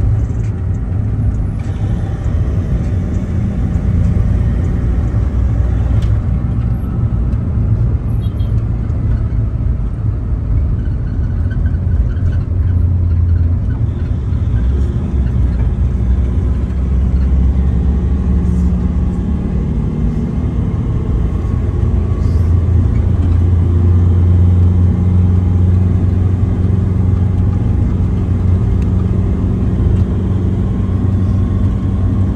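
Steady low rumble of engine and road noise inside a moving passenger van.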